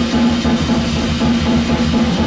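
Live jazz played on a drum kit with cymbals and an upright double bass, over a steady beat.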